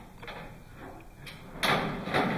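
Two balls rolling down metal tracks in a race demonstration, the rolling noise rising suddenly and growing loud about a second and a half in.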